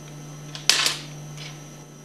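Two sharp clicks close together, about two-thirds of a second in: small valve parts knocking against the brass head of a plunger pump as a valve is set into its port. A low steady hum runs underneath.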